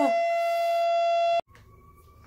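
A siren holding one steady pitch, with a person's voice sliding down beneath it at the start. It cuts off abruptly about one and a half seconds in, leaving only a faint steady tone.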